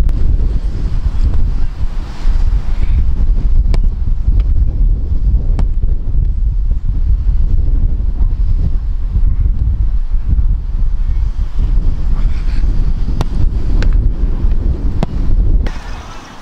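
Heavy wind buffeting on the microphone throughout. Through it come a few sharp, isolated thuds of footballs being kicked and caught.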